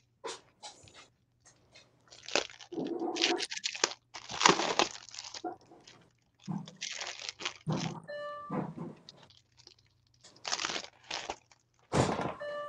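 Stiff clear plastic packaging on a gel printing plate crinkling as it is handled and turned over, in several separate bursts. A brief electronic chime sounds about eight seconds in.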